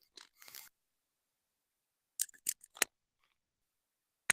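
A few short, sharp clicks and crackles from microphone handling, bunched together between two and three seconds in, with faint rustling just before them. They come while a participant's microphone is being sorted out and his speech is not getting through.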